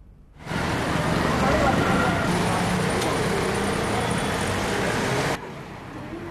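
Street noise: traffic with people's voices mixed in. It starts suddenly about half a second in and cuts off sharply near the end.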